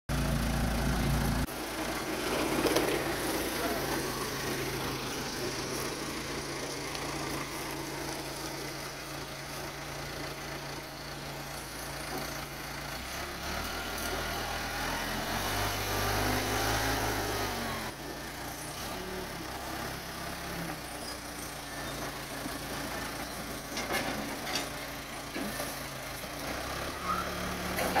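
Diesel engine of a Case 580E backhoe loader running under load while its front bucket pushes a wooden shed over gravel. The engine note shifts pitch a couple of times, about halfway through and again a few seconds later.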